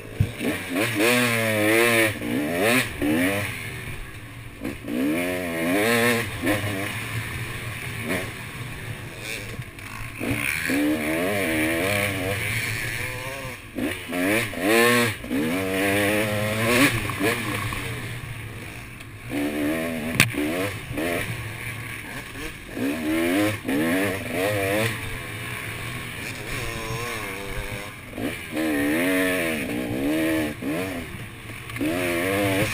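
KTM dirt bike engine revving hard and easing off over and over as the rider throttles through a tight woods trail, its pitch climbing and dropping every couple of seconds, with brief lulls.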